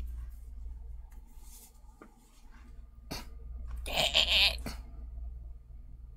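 A woman's brief cough-like vocal sound about four seconds in, preceded by a couple of faint clicks, over a low steady hum.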